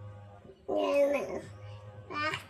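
A toddler's short vocal sound, under a second long, starting about two-thirds of a second in, over faint background music.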